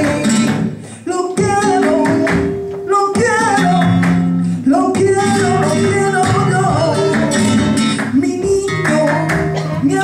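Flamenco tangos: a woman sings melismatic cante over flamenco guitar, with palmas (hand clapping) keeping the beat. The voice and guitar break off briefly about a second in.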